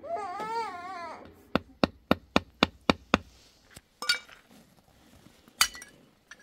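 A baby's short wavering cry, then a quick run of about seven hammer strikes, roughly four a second, followed by a few scattered, sharper strikes with a brief metallic ring near the end.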